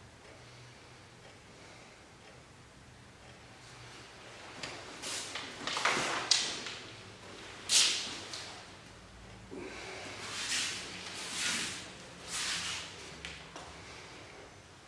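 Movement sounds of a solo iaido kata performed with a katana: after a quiet start, a series of short swishes and rustles as the sword is drawn and cut through the air and the feet and hakama move on the mat. The loudest two come about halfway through.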